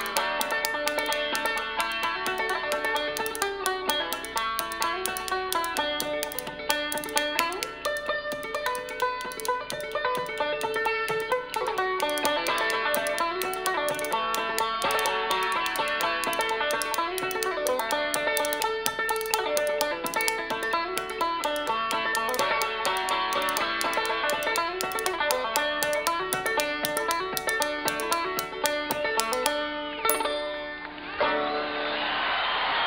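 A fast banjo medley of quick plucked rolling notes, with a pair of spoons clacked along in a rapid, steady rhythm of sharp clicks.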